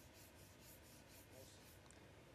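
Chalk scratching faintly on a chalkboard: a quick run of about eight short strokes as a word is finished and underlined.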